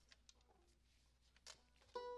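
Near silence in a quiet studio room, with a few faint clicks of instruments being handled; right at the end a single plucked string note starts ringing.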